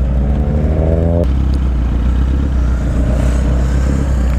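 Motorcycle engines idling at a junction, the low steady rumble of a Kawasaki Z800's inline-four underneath. For about the first second an engine note rises in pitch as a bike revs, then cuts off suddenly.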